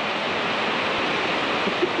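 Heavy rain pouring down, a steady dense hiss with no break.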